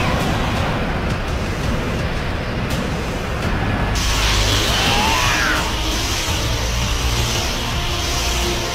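Anime fight soundtrack: music layered with dense, rumbling power-up and energy sound effects. About four seconds in the sound turns brighter, and a sweeping glide follows about a second later.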